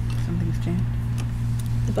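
A steady low electrical hum with a few faint, irregular clicks from handling and a brief low murmur.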